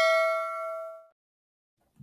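Notification-bell 'ding' sound effect: a single struck chime of several clear tones ringing out and dying away about a second in.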